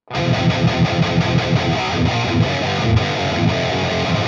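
Distorted electric guitar playing a rhythmic riff through amp-simulator plugins and a FabFilter Pro-L limiter, starting abruptly out of silence and holding a steady, heavily limited level with a repeating low pulse.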